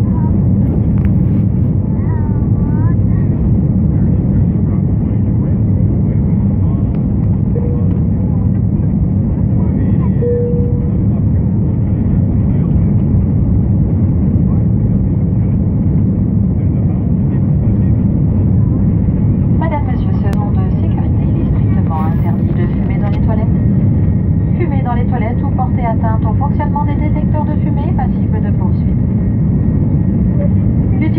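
Steady, loud cabin noise of a jet airliner in flight, the deep rumble of engines and airflow. Indistinct passenger voices join faintly in the second half.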